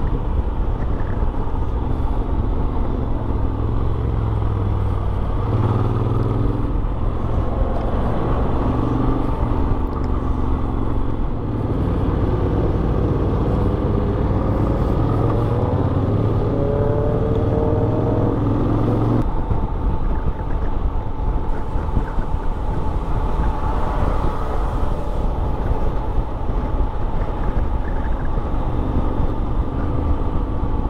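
Honda X-ADV's 745 cc parallel-twin engine under way on the road, mixed with heavy wind noise on the camera microphone. In the middle the engine note climbs steadily as the bike speeds up, then falls away suddenly about two-thirds of the way through.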